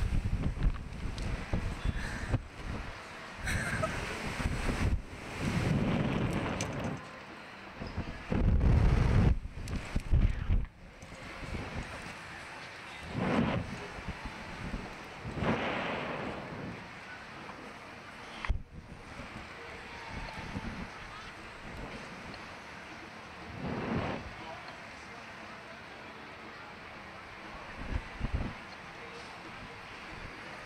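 Wind buffeting the microphone as a reverse-bungee slingshot ride capsule flings and swings through the air, with riders' laughter and yells. The rushing wind comes in loud surges for the first ten seconds or so, then settles, leaving a few short bursts of laughter.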